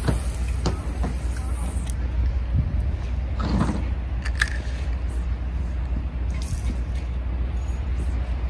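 A spinning rod being cast: a sharp swish right at the start, then fishing line hissing off the spinning reel for about two seconds. Underneath is a steady low rumble of wind on the microphone.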